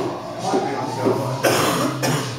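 Indistinct voices over a steady low hum, with a sudden louder, noisier burst about one and a half seconds in.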